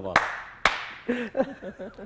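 Two sharp hand claps about half a second apart, the first followed by a brief ringing tail, then a few short bursts of men's voices.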